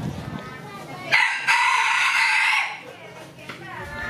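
A rooster crowing once, a loud call lasting about a second and a half that starts suddenly about a second in.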